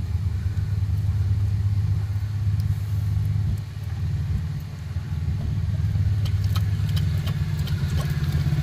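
Steady low rumble of a vehicle engine idling close by, with faint lapping as a dog drinks from a plastic tub of water.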